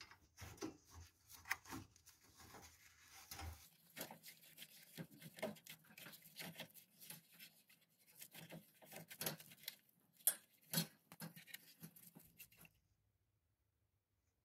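Faint, irregular metallic clicks and scraping as a nut driver turns an M8 hex-head screw into the roller-shutter pulley's axle, fixing the end of the new spring. The sounds stop shortly before the end.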